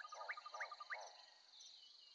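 Faint forest-ambience background of animal calls: a fast pulsing trill under a high steady insect-like buzz, with three short rising chirps. It fades out about a second in, leaving near silence.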